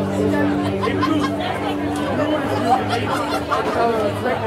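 A live band's last held chord ringing out and stopping about one and a half seconds in, then crowd chatter.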